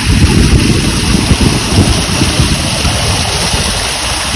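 A strong stream of water gushing from an irrigation pipe outlet and pouring onto a person's head and shoulders, splashing loudly into a muddy channel; a loud, steady rushing with a deep, churning low end.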